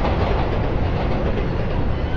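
A loud, steady low rumble with a rattle running through it.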